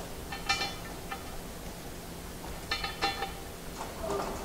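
Small steel fasteners clinking against each other and against aluminium extrusion as they are handled. There are a few short ringing clinks about half a second in and a cluster of them around three seconds in.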